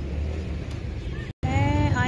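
Low, steady rumble of a car heard from inside its cabin, cut off abruptly a little over a second in; a woman's voice then starts over low street noise.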